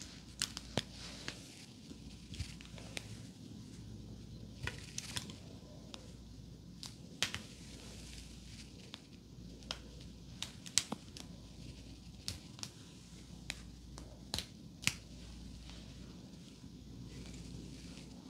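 Hands gathering and twisting long, thick hair into a bun, picked up close by a wrist-worn microphone: a soft, steady rustle of hair with irregular crisp crackles and clicks.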